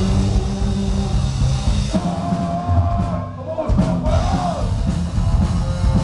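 Live heavy metal band playing, with electric bass, guitar and drum kit under a sung vocal line. About halfway through, the band breaks off for a moment, then comes back in.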